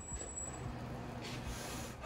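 Steady low hum of coin-laundry gas tumble dryers running, with a faint, short breath about a second in as a smoker draws on a cigarette.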